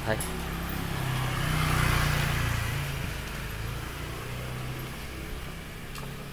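Motor scooter passing close by, its engine and tyre noise swelling to a peak about two seconds in and then fading, over a steady low engine hum.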